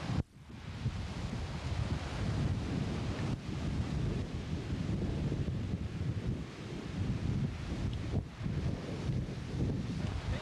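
Strong wind buffeting a camcorder microphone with a heavy low rumble, over surf breaking on a rocky shore. The sound dips sharply for a moment just after it begins.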